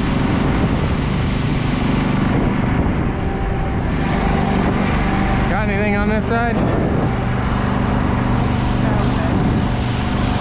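A fire truck's engine running steadily while a water stream from its nozzle hisses onto the ground. About six seconds in, a brief wavering, voice-like call lasts about a second.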